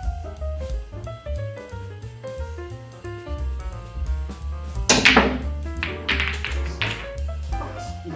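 Background music throughout. About five seconds in, a sharp knock of a pool cue striking the cue ball, followed by a few clacks of billiard balls hitting each other.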